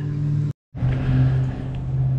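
A steady low mechanical hum like a running motor, broken by a brief dead dropout about half a second in.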